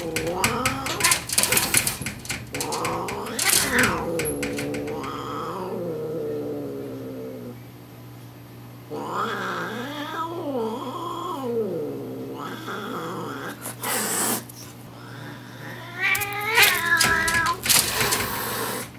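Two cats yowling at each other through a door screen in long, wavering caterwauls that rise and fall in pitch. Bursts of hissing and rasping come near the start, about four seconds in, and again near the end.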